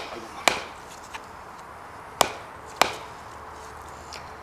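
Wooden mallet striking the top of a sharpened wooden stake, driving it into the ground: three sharp wood-on-wood knocks, the last two about half a second apart, with a faint tap between the first two.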